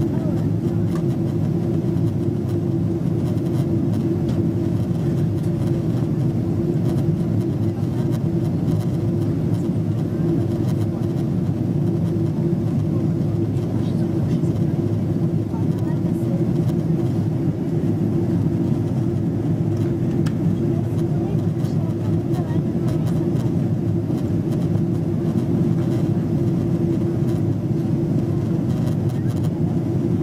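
Steady cabin noise inside a Boeing 777 airliner on its descent to land: the drone of the engines and rushing airflow, with a steady low hum running through it.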